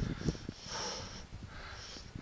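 A skier's heavy breathing close to the camera microphone, in recurring hissy puffs, over the low rumble and buffeting of wind on the microphone.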